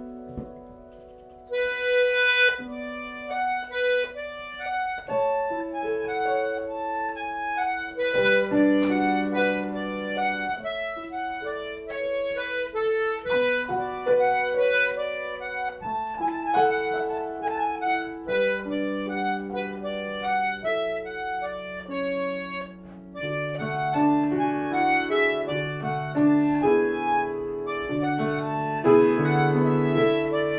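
Button accordion and grand piano playing a slow air. The accordion comes in about a second and a half in, with long held melody notes over the piano's chords.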